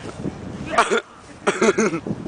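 A child laughing in short bursts: one burst about a second in and a quick run of three laughs near the end.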